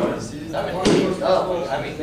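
Students talking in small-group discussion, with one sharp bang a little under a second in that stands out above the voices.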